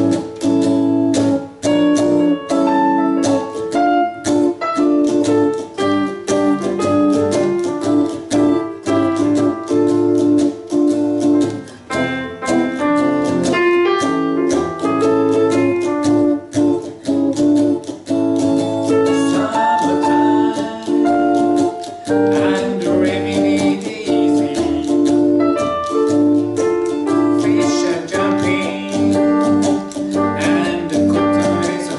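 A live duo of electric guitar and a Yamaha keyboard on a piano sound playing a song together, with a steady run of notes and chords.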